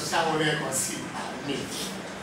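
A person speaking; the speech recogniser wrote no words for it.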